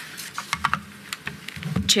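Light, irregular clicks of typing on a computer keyboard, a few keystrokes at a time with short gaps between.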